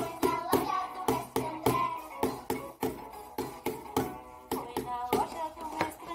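An empty plastic ice-cream tub struck by hand as a toy drum, a steady beat of about three to four knocks a second, over a recorded children's song with singing.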